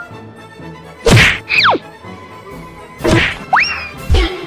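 Dubbed-in cartoon sound effects: a loud whack followed by a whistle sliding steeply down, then about two seconds later another whack followed by a whistle sliding up.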